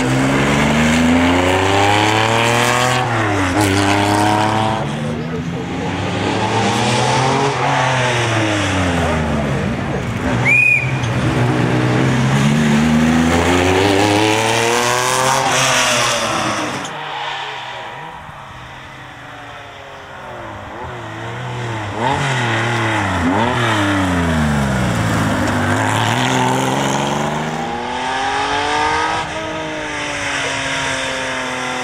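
Air-cooled flat-six of a Porsche 911 RS 3.0 rally car, revved hard up through the gears and lifted off again and again as it is driven flat out past the roadside. There is a brief high chirp about a third of the way through. The engine drops away for a few seconds past the middle, then comes back in.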